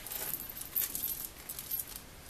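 Leather-covered traveler's notebook being closed and handled, with scattered light clicks, rustles and small metallic jingles from the metal charm on its elastic band.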